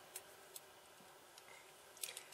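Near silence: room tone, with two faint ticks early on.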